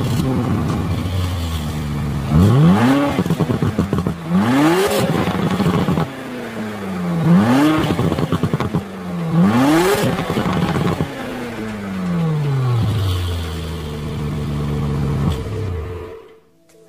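Audi RS5's 2.9-litre twin-turbo V6 heard at the exhaust tip, revved four times at a standstill. Each rev rises sharply and drops back; the last falls slowly to a steady idle for the last few seconds.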